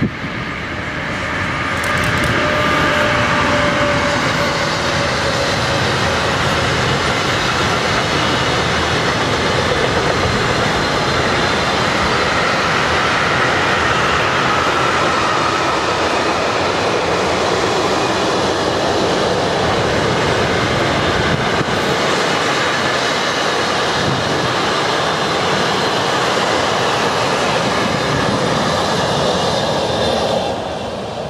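Siemens ES 64 F4 (class 189) electric locomotive passing with a long intermodal container freight train. A higher whine in the first few seconds as the locomotive goes by, then the steady, loud rolling noise of the container wagons, which begins to fade as the last wagon passes at the end.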